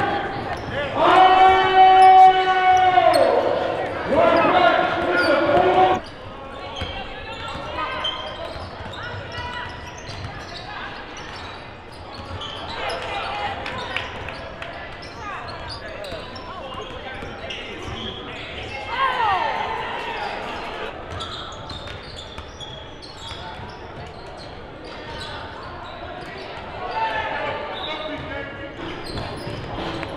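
A basketball being dribbled on a hardwood gym floor during a game, with spectators' voices carrying in the large gym. Near the start come two long, held shouts.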